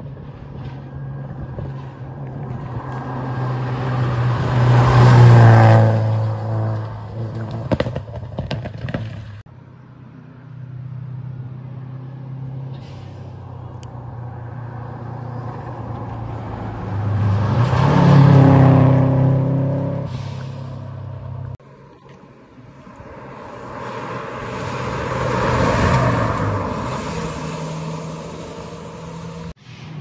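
Rally cars at full throttle climbing a hill road, passing one after another: three loud passes, each engine note rising as the car approaches and dropping in pitch as it goes by, the first the loudest.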